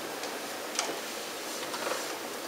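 A few light, sharp clicks of laptop keys over the steady hiss of a lecture-hall recording, one clear click a little under a second in and a few more near the end.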